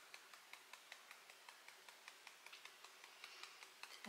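Faint, even fingertip tapping on the side of the other hand, the EFT karate-chop point, about five light taps a second.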